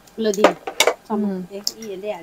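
A fork clicking against a plate a few times while noodles are eaten, alongside short murmured 'mm-hmm' sounds of a voice.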